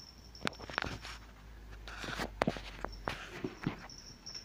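Footsteps on a tiled floor mixed with the phone being handled and moved: a run of irregular sharp knocks and short rustles over about three seconds, with a low rumble beneath.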